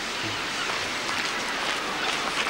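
Steady outdoor seaside ambience: an even hiss with no distinct events.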